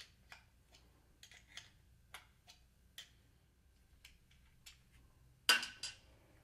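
Faint, irregular metallic clicks, a few a second, of a 7/16 wrench working the two nuts off the U-bolt on a rowing-machine handle, with a louder rattle near the end.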